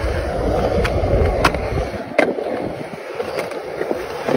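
Skateboard wheels rolling over rough concrete with a low rumble that drops away about halfway through. A few sharp clacks of the board come over it, the loudest about two seconds in.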